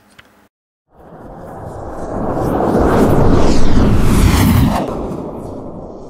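Logo-sting sound effect: a rumbling whoosh that starts about a second in, swells to a loud peak over a few seconds, then fades away.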